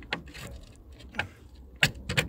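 Plastic wheel trim being pressed onto a steel wheel: a few sharp clicks and knocks, the loudest near the end as the trim's clips snap into place.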